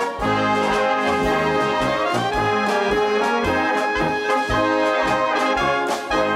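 Instrumental brass-band music: trumpets play the melody over a drum kit keeping a steady beat.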